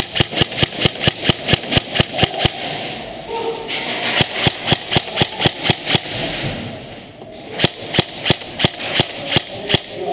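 Airsoft guns firing BBs in quick strings of sharp cracks, about four or five a second, thinning out in the middle and picking up again near the end.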